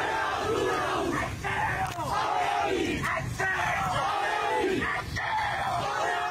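A crowd of marching protesters shouting slogans together, many voices loud and continuous.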